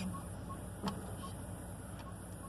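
Safari vehicle's engine running with a steady low hum. A faint short high tick repeats about three times a second, and there is a single sharp click about a second in.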